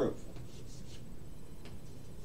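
Chalk on a chalkboard: faint scratching strokes as it is written with, over a steady low background hum.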